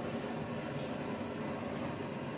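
Handheld butane torch burning steadily, a continuous even hiss of the flame, passed over wet acrylic paint to bring up cells.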